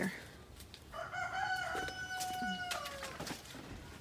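A rooster crowing once: one long call of nearly two seconds, starting about a second in and dropping in pitch at the end.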